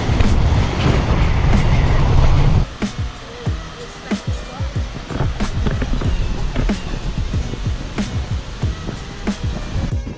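Background music with a steady drum beat. For the first few seconds a loud low rumble of a car driving runs under it, then cuts off abruptly, leaving the music alone.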